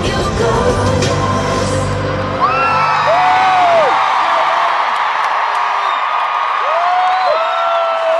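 Live pop concert music from a stadium sound system, heavy bass and beat, which drops out about two and a half seconds in. A stadium crowd then cheers, with long high screams and whoops near the microphone.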